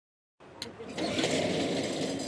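A moment of silence, then racetrack sound at a horse race start: a sharp clack as the starting gate springs open, followed by the start bell ringing continuously.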